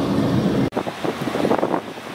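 Wind buffeting the microphone as a rough, rushing noise. An abrupt cut about two-thirds of a second in changes its texture.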